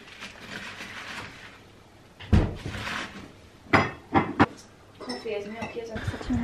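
Wood-burning stove being tended to get the fire going: a soft hiss of air at first, then sharp metallic knocks about two and four seconds in, with a couple of small clinks.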